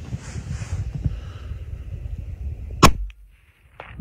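A single rifle shot from a .300 Winchester Magnum, nearly three seconds in, sharp and by far the loudest sound. It is preceded by a low steady rumble on the microphone and dies away quickly.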